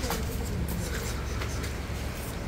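Footsteps and scuffing close to a handheld microphone, with a few short clicks, over a steady low rumble.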